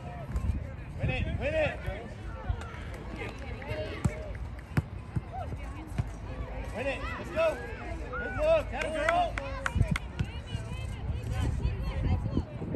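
Voices calling and talking at an outdoor soccer game, several people at once, louder in bursts in the second half, over a steady low rumble. A few sharp knocks stand out, one near the end.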